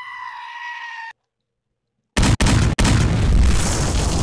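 Homemade video-intro soundtrack: a high, steady held tone for about a second, a second of silence, then a sudden, very loud, distorted blast about two seconds in that runs on with two brief cutouts.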